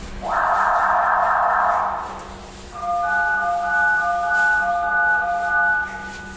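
A building fire alarm sounds in a loud, harsh burst for about two seconds. Then, after a short pause, an electronic chime of several steady tones plays for about three seconds, the lowest tone sounding as separate notes. This is the kind of signal that precedes an emergency public-address announcement.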